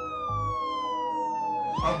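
Emergency vehicle siren wailing: one slow falling tone that turns and starts to rise again near the end.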